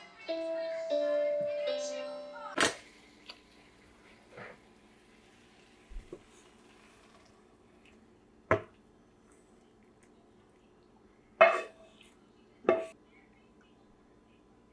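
A children's electronic activity desk playing a short tune of clear beeping notes, which stops about two and a half seconds in. Then, after a cut, a few sharp clinks of a frying pan and kitchenware against a ceramic plate.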